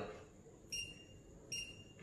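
Green-beam line laser level giving two short, high electronic beeps, less than a second apart.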